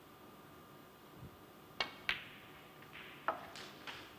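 A snooker shot. The cue tip strikes the cue ball with a sharp click about two seconds in, the cue ball clicks into the pink a moment later, and a few lighter clicks and knocks follow as the balls run on the table.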